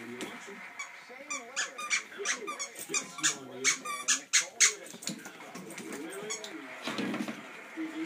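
Squeaker in a stuffed monkey dog toy squeaking in a rapid run of about a dozen sharp squeaks as a bulldog bites down on it, from about a second in until about five seconds in.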